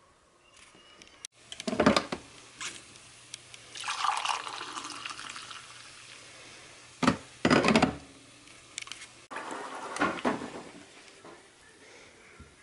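Coffee poured from a glass carafe into a ceramic mug: a steady liquid pour lasting a couple of seconds. Around it come several sharp clunks and knocks of kitchenware being handled and set down, the loudest of them about two seconds in and again about seven seconds in.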